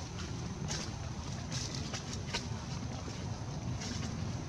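Steady low wind rumble on the microphone, with a few brief faint rustles scattered through it.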